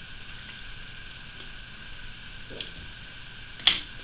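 Steady background hiss of a quiet room, with a faint tick about two and a half seconds in and a short, sharp click near the end.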